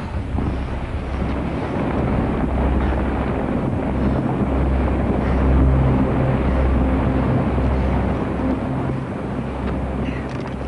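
Steady rushing roar with a deep rumble underneath, swelling a little around the middle: an avalanche of snow and ice pouring down the face beside the climbing route, mixed with wind.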